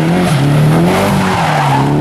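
Nissan S13 drift car sliding with its tyres squealing over the engine held at high revs. The engine note climbs in the first moments, holds with a slight wobble, then drops off toward the end.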